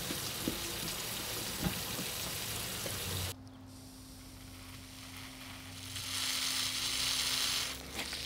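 Steady hiss of water spray from a lawn sprinkler. About three seconds in it cuts off abruptly, leaving a quieter steady low hum, and a softer hiss swells up in the last two seconds.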